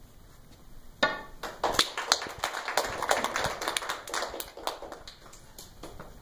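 A small group clapping, starting about a second in and dying away near the end.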